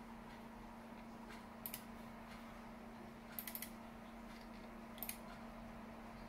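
Computer mouse button clicks in three short groups: a pair, then a quick run of three or four, then another pair, over a steady low hum.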